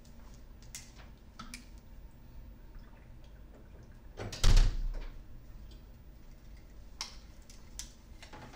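Quiet room tone with a few faint clicks and rustles, and one loud thump about halfway through that dies away over about half a second.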